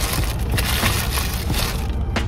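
Paper sandwich wrapper crinkling and rustling as it is folded up, in irregular crackles over a low steady rumble.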